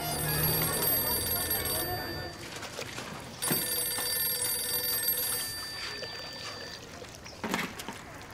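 A telephone ringing twice, each ring about two seconds long of steady electronic tones, with a pause of about a second and a half between them: an incoming call, answered a few seconds later. A short knock or clatter near the end.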